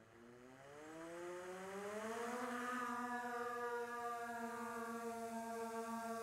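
Skydio 2 quadcopter's motors and propellers spinning up at takeoff: a hum that rises in pitch over about two seconds as the drone lifts off, then holds a steady hover tone.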